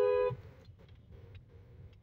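A vehicle horn sounds a steady blast of two notes together that cuts off about a third of a second in, leaving faint low traffic rumble with a few soft clicks.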